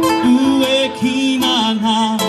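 Live acoustic music: a guitar and other plucked strings playing an instrumental passage, with sustained notes that bend in pitch.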